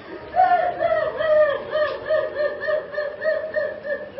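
A person's high voice in quick rising-and-falling syllables, starting about half a second in and running on until near the end.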